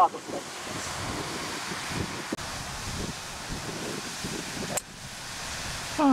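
Wind on the microphone, a steady rushing, with one faint click a little past two seconds in.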